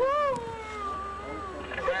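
A woman wailing as she cries: one long high-pitched wail that rises at the start, then falls slowly and fades about a second and a half in.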